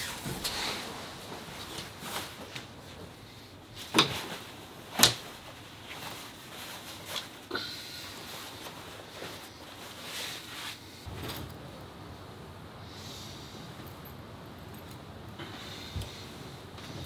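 Clothes and bedding being handled in a small room: fabric rustling with scattered clicks and knocks, the two loudest sharp knocks about four and five seconds in.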